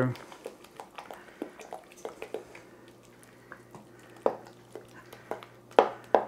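Wooden spoon stirring thick beef-and-gravy filling in a stainless steel saucepan: irregular light clicks and knocks of the spoon against the pan, with a couple of sharper knocks near the end.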